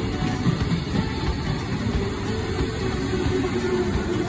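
JR West electric local train running into a station platform, a steady low rumble, with background music playing over it.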